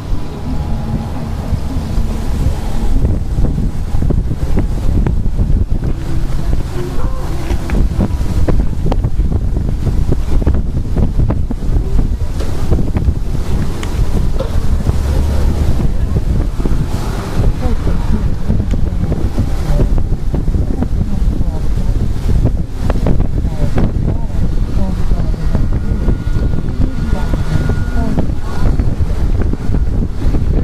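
Wind buffeting the camcorder microphone: a loud, continuous low rumble with gusty fluctuations.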